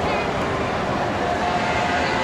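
Dense crowd noise on a busy street with voices mixed in, and a steady, horn-like tone held for just under a second in the second half.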